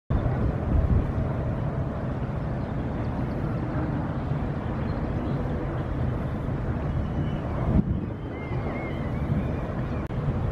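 Low, steady rumble of a general cargo ship's engines running while it lies in a lock, with wind buffeting the microphone. A brief thump comes just before eight seconds, followed by a few faint high chirps.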